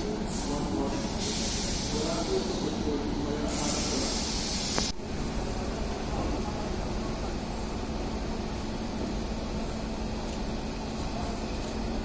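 Railway station ambience with a passenger train on a far track: a steady low hum throughout. Bursts of hissing and people's voices in the first five seconds stop abruptly, leaving the hum.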